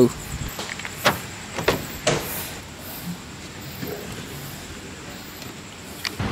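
A few short clicks and knocks of a car's doors and fittings being handled as people get in, over a faint steady hiss and a thin high whine.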